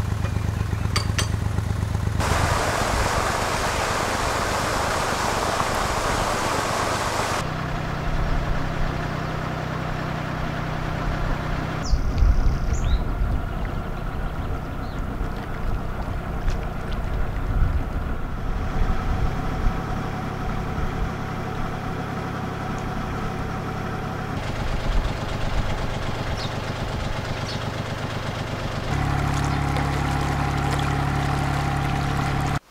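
A narrowboat engine running steadily in several cut-together stretches, its low hum changing pitch abruptly at each cut. About two seconds in, a rushing noise takes over for some five seconds.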